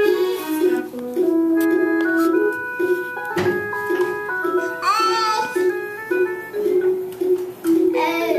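Electronic melody playing from a push-button children's music exhibit as a toddler presses its picture buttons: a string of simple organ-like notes at an even pulse, with a single knock about three and a half seconds in and a short rising child's squeal about a second later.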